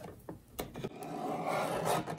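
Fiskars guillotine paper trimmer cutting a sheet of vellum: a few light clicks as the blade arm is set down, then the scraping slice of the blade through the sheet, growing louder over the last second.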